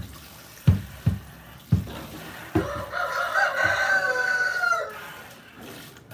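A rooster crows once, one long call of about two seconds, a little before the middle, falling at its end. A few short dull thumps come before and under it.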